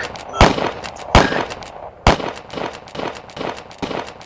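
A string of loud, sharp gunshots, each with a ringing tail: four in quick succession, the first three under a second apart and the fourth about a second later, with fainter crackles between.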